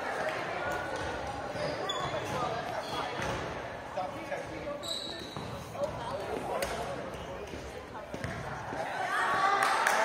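Echoing school-gym ambience between badminton rallies: players' voices chattering, with a few sharp knocks and short squeaks of sneakers on the hardwood court.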